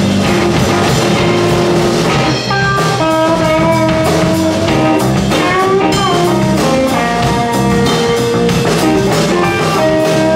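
Live blues-rock band playing an instrumental passage: an electric guitar lead with long held notes and a bend about six seconds in, over bass guitar and drum kit.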